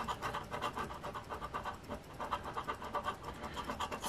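Edge of an Engelhard silver bar scraping the latex coating off a scratch-off lottery ticket in quick back-and-forth strokes, a soft rhythmic scratching at several strokes a second.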